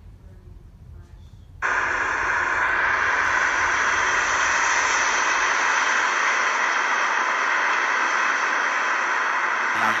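Outdoor street-corner recording played back through laptop speakers: a steady, hiss-like rushing noise, like wind and traffic, that starts abruptly about two seconds in.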